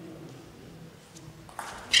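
Table tennis ball played in a serve: a few light clicks of celluloid ball on bat and table in the second half, then a much louder, sharper hit just before the end.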